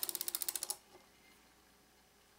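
Rapid run of small clicks, about eighteen a second, as soroban beads are swept column by column against the frame to clear the abacus. The clicking stops about three-quarters of a second in.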